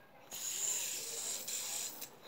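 Fidget spinner spinning in the hand, a faint steady whir.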